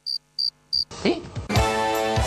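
Music dropping out into silence that is broken by three short high beeps about a third of a second apart, then a brief rising swoop before the music comes back about one and a half seconds in. This is an audio dropout, in keeping with the sound problems being mocked.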